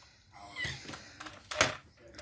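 Quiet chewing and breathing sounds from a man eating a mouthful of durian, with one short sharp sound about one and a half seconds in.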